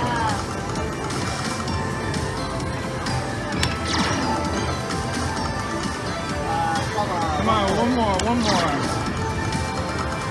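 Ultimate Fire Link slot machine playing its electronic bonus-feature music and effects as the reels respin, with a few sharp clicks.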